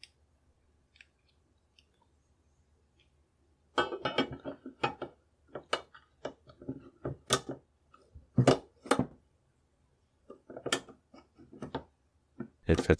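Steel bolt of a Danish Krag-Jørgensen model 1889 rifle, with its internals fitted, sliding into the receiver and being worked closed. After a nearly silent start, a run of sharp metallic clicks and scrapes begins about four seconds in. This is a test fit of the assembled bolt in the rebarrelled action, which fits the same as the bare bolt body did.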